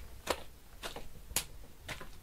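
A hanging pig carcass is struck hard four times, about two blows a second, for Foley blows to a body. The third blow is the loudest.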